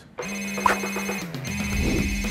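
A phone ringtone ringing: a steady electronic tone that starts just after the start, breaks off briefly about a second and a half in, and starts again.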